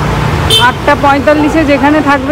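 A person's voice talking over a steady low rumble of street traffic.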